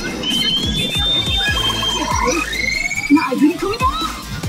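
Pachinko machine (P High School Fleet All Star) playing its presentation audio: electronic sound effects with sliding pitch sweeps over loud music. A few sharp hits come near the end.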